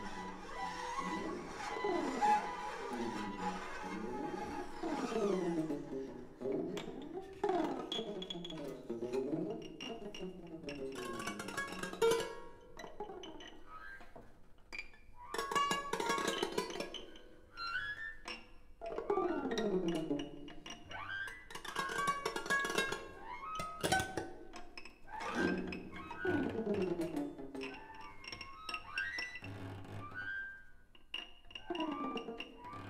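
Free-improvised music for bowed strings (upper strings, cello and double bass): many sliding glissandi, repeatedly falling and rising, fill the first few seconds, then the playing breaks into stop-start clusters of scratchy bowed strokes and glides with short quieter gaps between.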